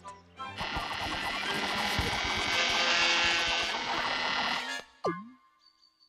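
Cartoon sound effect of a woodpecker pecking a tree trunk at high speed: a dense, rapid rattle of knocks lasting about four seconds, ending with a short sliding whistle-like glide.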